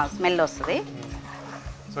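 Short bursts of a person's voice in the first second, then a quieter stretch over a steady low hum.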